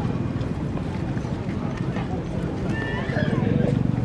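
Indistinct chatter of shoppers at an open-air flea market, with footsteps crunching on a gravel path.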